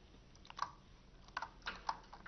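Faint keystrokes on a computer keyboard: a few separate key presses, a pair about half a second in and several more in the second half.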